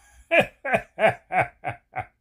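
A man laughing: a steady run of short 'ha' pulses, about three a second, each falling in pitch.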